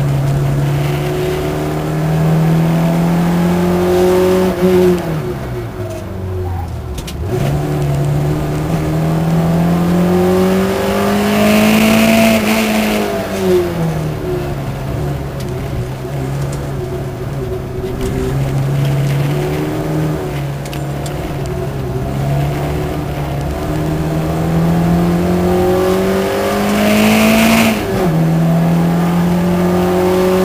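Competition car's engine heard from inside the cabin while lapping a circuit: the engine note climbs steadily under acceleration, then falls away sharply when the driver lifts off and changes gear for corners, three times.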